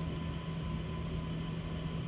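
Kodak NexPress digital press running its fifth-station colour-change routine: a steady machine hum with a constant low drone and a faint higher whine.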